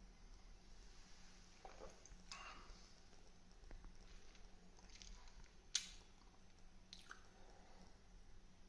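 Near silence with faint mouth sounds of someone sipping and tasting coffee. A short sharp click comes about three-quarters of the way through, with a fainter one a second later.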